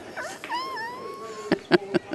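A gliding, meow-like call that falls and then holds for about a second, followed near the end by rapid, evenly spaced clicking at about five ticks a second.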